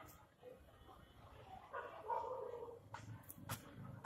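A dog barking about two seconds in, followed by a few sharp clicks.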